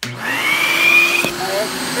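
Vacuum cleaner switched on suddenly and running loudly, its motor whine rising in pitch as it spins up. There is a sharp knock just over a second in. Near the end a baby's voice cries out over the motor.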